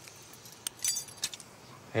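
A few light metallic clinks and jingles, short and high-pitched, bunched around the middle.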